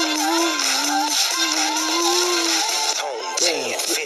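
Karaoke singing: a voice holds long, slightly wavering notes over a pop backing track. Near the end the music thins out and a speaking voice comes in.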